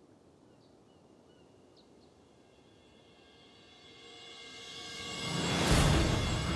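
Faint outdoor ambience with a few scattered bird chirps, then a swell of dramatic soundtrack music that rises steadily from about halfway and breaks into a loud hit near the end.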